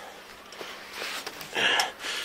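A person's short, sharp breath near the end, over a faint steady hiss.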